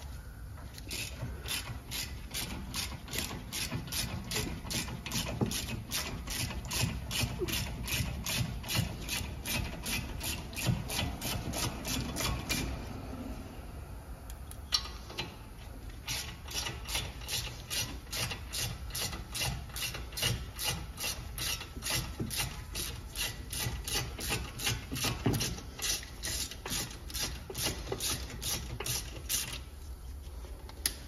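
Ratchet wrench clicking rapidly, about three or four clicks a second, as a star (Torx) socket on an extension unscrews a VW Polo's front brake caliper guide bolts. The clicking stops for about two seconds midway, then goes on as the second bolt is undone.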